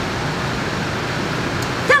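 Steady, even rushing background noise with no breaks or distinct events.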